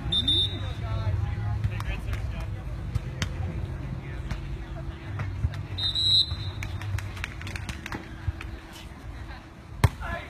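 Outdoor background of low rumble and indistinct distant voices, broken by two short high-pitched tones about six seconds apart and a single sharp smack near the end.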